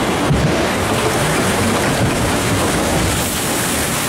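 Steady rush of water in a log flume ride's channel.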